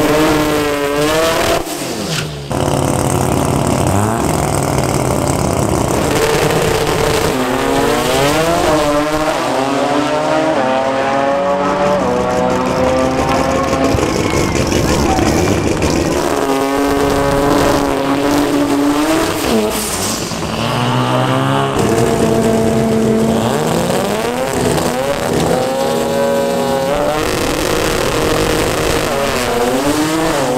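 Toyota Starlet drag cars revving hard at the start line during burnouts, the engine pitch climbing and dropping again and again over the hiss of spinning tyres. There is a sudden break about two seconds in.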